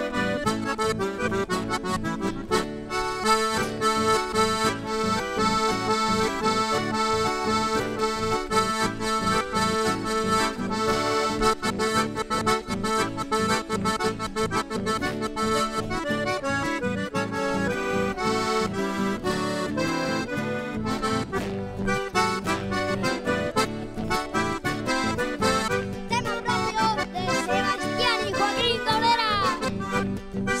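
Instrumental chamamé played on accordion, with an acoustic guitar strummed along in a steady dance rhythm.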